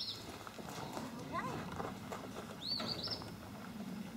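A donkey's hooves make faint, irregular knocks as it steps down out of a stock trailer onto gravel. A bird chirps briefly at the start and again about three seconds in.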